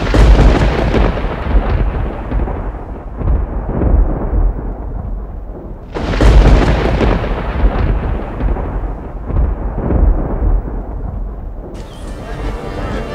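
Thunder sound effect: two cracks of thunder, one at the start and one about six seconds in, each rolling on and fading away over several seconds.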